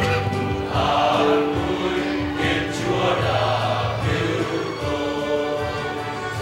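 Choral music: a choir singing sacred music in long held notes over instrumental accompaniment, fading slightly near the end.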